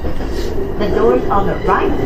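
E235 series electric train running, heard from inside the driver's cab: a steady low rumble, with an automated onboard announcement voice speaking over it.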